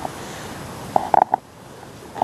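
Three short, sharp noises in quick succession about a second in, over a faint steady hiss: strange noises of unknown source.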